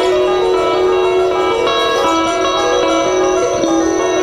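Minimalist music for electric guitar and electronics: dense layers of overlapping held and repeated notes, shifting every fraction of a second at a steady loud level.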